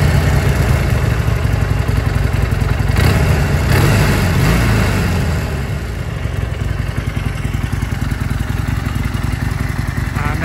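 Harley-Davidson XL1200 Custom Sportster's air-cooled 1200 cc V-twin idling just after starting. It runs high and loud for the first few seconds, then settles to a steadier, lower idle about five seconds in.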